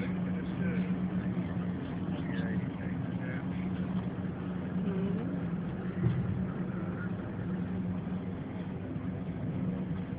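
Steady engine and road noise inside a moving car's cabin, with a constant low hum, and faint speech in the background.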